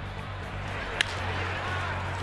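Ballpark crowd noise over a steady background music bed, with one sharp crack of a bat hitting a pitched baseball about a second in.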